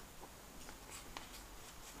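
Pages of a thin paper booklet being handled and turned, faint light ticks and crinkles of paper.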